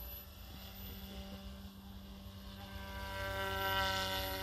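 Radio-controlled model helicopter flying, a steady whine of its motor and rotor that grows louder and shifts slightly in pitch near the end as it comes closer.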